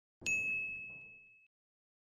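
A single bell-like ding sound effect: one clear high tone that starts with a bright sparkle and rings out, fading away over about a second.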